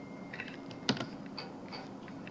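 Faint, irregular clicks of computer keyboard keys being typed, with one sharper keystroke about a second in.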